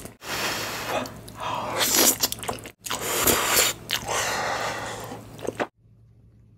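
Close-miked eating sounds: chewing and biting on cheesy spicy noodles and grilled fermented pork sausage, in three stretches separated by brief silent breaks, ending suddenly a little before the close.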